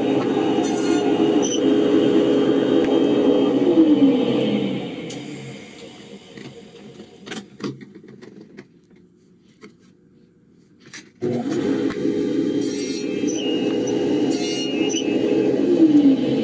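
A table saw runs steadily while grooves are cut in a pine board, then switches off and winds down with a falling pitch about four seconds in. A few quiet knocks and clicks follow as the board and fence are handled. The running saw comes back suddenly at about eleven seconds and winds down again near the end.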